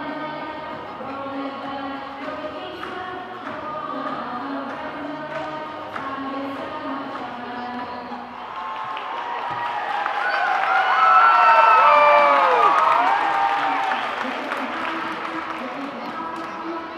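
Music playing over an arena sound system. About nine seconds in, crowd cheering and shouting swells, loudest around twelve seconds in, then fades back under the music.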